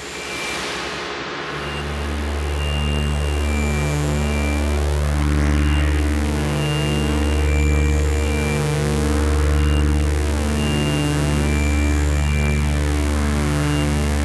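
Electronic synth score. A deep bass drone swells in about a second and a half in, under layers of evenly pulsing synth tones and short high blips repeating in a steady rhythm.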